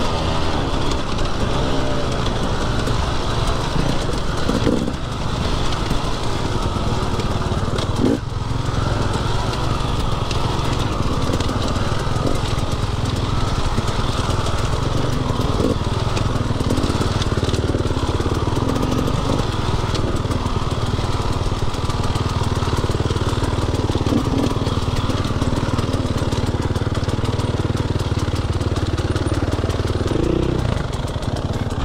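Dirt bike engine running steadily while the bike is ridden along a rough dirt trail, heard from a camera on the bike. Knocks and rattles from the trail break in now and then, the sharpest about eight seconds in.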